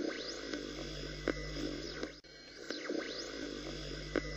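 A low steady hum with a few faint sweeping pitch glides and soft clicks.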